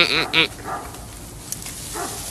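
A goat bleating: one loud, quavering call that ends about half a second in.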